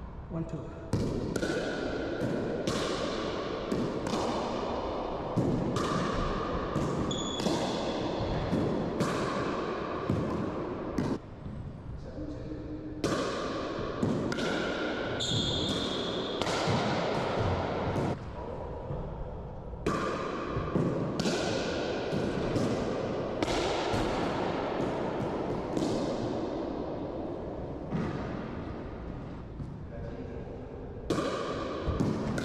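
Pickleball rally: paddles hitting the hollow plastic ball and the ball bouncing off floor and walls, sharp hits every half second to a second with a short lull about eleven seconds in. Each hit rings out with a ping and a long echo in the enclosed racquetball court.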